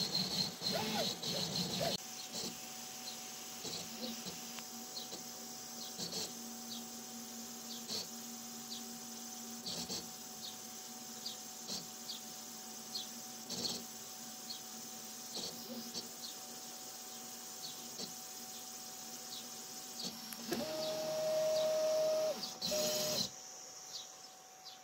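3D printer with a PAX 5-axis printhead: its stepper motors whine in gliding pitches for the first two seconds as the head finishes moving over the print. Then a steady hum with light ticks about every two seconds. About 20 seconds in, a loud steady stepper tone sounds for roughly two seconds as the axes move again, then cuts off.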